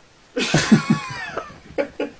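People bursting into laughter, a quick run of 'ha-ha' pulses with a high squealing giggle, starting about a third of a second in and tailing off, with a short extra burst near the end.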